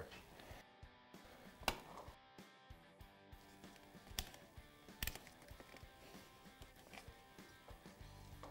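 Faint background music with three short, sharp clicks from plastic trim clips and wiring being pressed into place on the ATV frame. The loudest click comes just under two seconds in; the other two follow about a second apart, around four to five seconds in.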